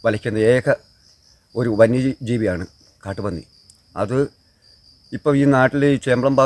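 A man speaking in short phrases with pauses, over a steady high-pitched insect drone.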